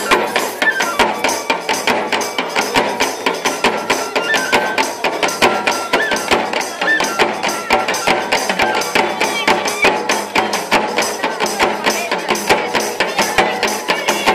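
Traditional folk dance music with a fast, steady percussion beat and a melody running over it.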